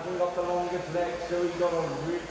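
A man's voice speaking, drawn out, with no clear words picked up.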